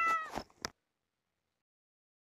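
A short cat meow that trails off within the first half second, followed by a faint click and then dead silence.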